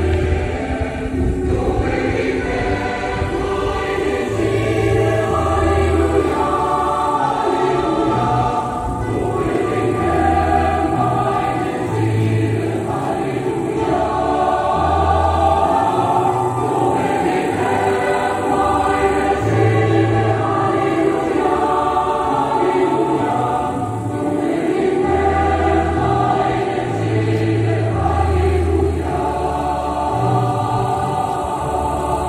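A choir singing with instrumental accompaniment, over a slow bass line that moves from note to note every second or two.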